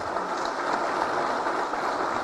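Audience applauding, a steady clapping.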